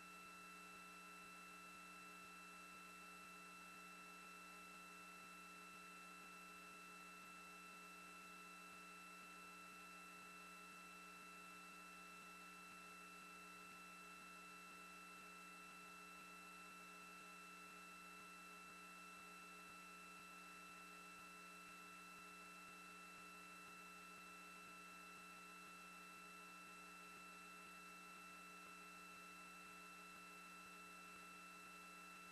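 Near silence: a faint, steady electrical hum made of several constant tones, unchanging throughout.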